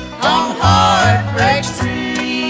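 Country string-band music between sung lines: an instrumental fill whose lead melody bends and slides in pitch over plucked-string backing.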